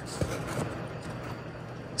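Steady, low outdoor background noise with no distinct event.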